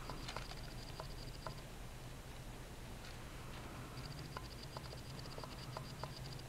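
Faint scratching and a few light taps of a crayon on cardstock, over a low steady hum and a faint high whine that comes and goes.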